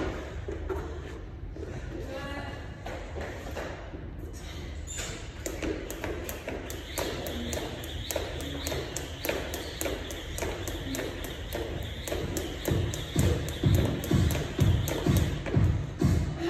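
Jump rope ticking against the floor in a quick, even rhythm, about three strokes a second, starting about five seconds in. Background music with a heavy bass beat comes in loud near the end.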